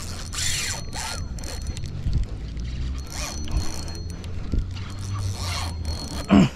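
A spinning reel being cranked in several short spells, its gears and rotor whirring as line is wound in.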